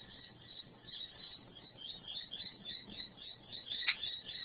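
Faint, rapid high chirping calls repeating all through, over a faint low hum.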